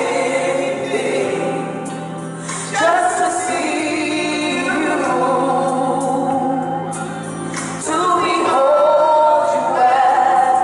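Gospel praise team of women singing into microphones, holding long notes, with a steady low note sustained underneath for most of the passage.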